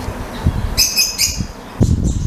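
A small bird chirping: two quick, high calls about a second in, over a steady low rumble, with a low bump near the end.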